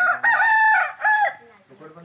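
A rooster crowing once, loud, in a single crow of about a second and a half that ends on a shorter final note.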